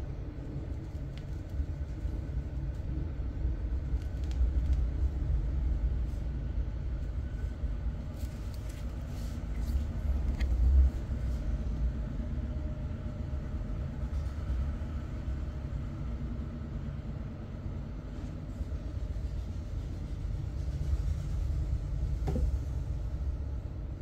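A steady low background rumble that swells twice, louder about ten seconds in, with a few faint clicks.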